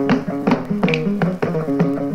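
Ngoni, the West African plucked lute, playing a quick repeating run of plucked notes, about four or five a second, mostly in a low-to-middle register, with no singing. It comes from an early-1960s radio recording.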